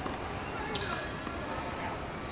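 A tennis ball bouncing once on an outdoor hard court, a sharp knock about three-quarters of a second in, over faint voices.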